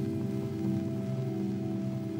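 Meditation drone music: several sustained low tones held steady, with a fast shimmering flutter.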